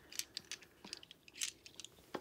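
Faint, scattered clicks and light clinks of steel sockets and tools being shifted by hand in a pile.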